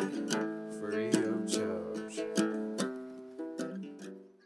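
Acoustic guitar strumming chords at a steady pace, fading out toward the end as the song finishes.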